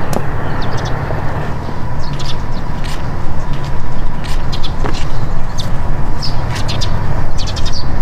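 Outdoor ambience: birds chirping in short, scattered calls over a steady low rumble.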